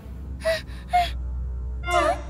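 A cartoon character's voice gasping twice in quick succession, about half a second apart, then a wavering frightened vocal sound near the end, over a low, steady, ominous music drone.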